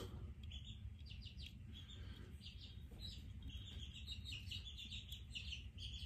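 Baby chicks peeping faintly, a continuous run of short, high chirps coming several a second.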